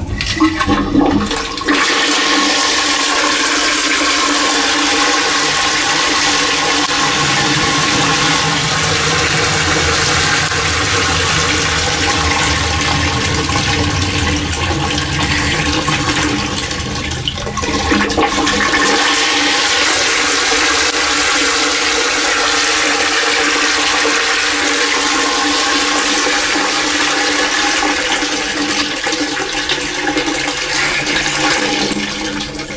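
INAX flush-valve Japanese squat toilet flushing: a loud, steady rush of water through the wash-down bowl begins about one and a half seconds in, with a steady hum under it. The rush dips briefly about halfway through and then carries on.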